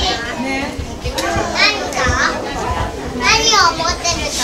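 Children's high voices talking and calling out over the chatter of other people, loudest about one and a half seconds in and again near the end.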